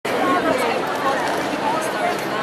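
Crowd chatter: many voices talking at once in a steady babble, with no single voice standing out.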